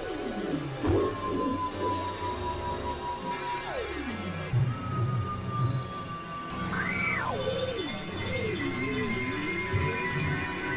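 Experimental electronic music: high held tones that each slide steeply down in pitch, and a swoop up and back down about seven seconds in followed by a wavering lower line, all over a low pulsing.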